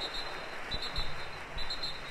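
Swimmers splashing as they sprint across a pool, an even wash of water noise. A faint high-pitched tone comes and goes about once a second.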